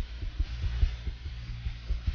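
Irregular low thumps, several a second, over a steady low hum, like a throbbing heartbeat.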